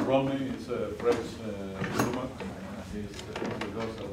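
Indistinct talk in a classroom with knocks of classroom furniture being handled, a sharp knock about two seconds in.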